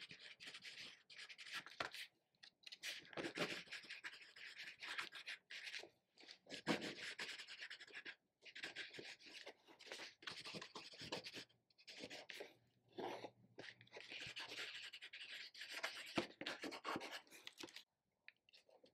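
Pencil writing words on an art journal page: a faint scratchy sound of lead on paper, coming in stretches of a second or two with short pauses between words.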